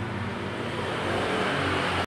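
Honda Scoopy scooter's single-cylinder four-stroke engine idling steadily.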